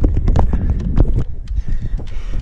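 Irregular knocks and clicks from an action camera being handled and shifted on its bike mount, over a steady low rumble of wind and road noise.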